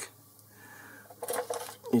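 Light metallic clinks from a steel bar and tooling being handled over a lathe bed, a few short clicks a little over a second in.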